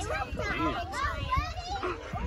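Several children's voices talking and calling out at once while they play outdoors.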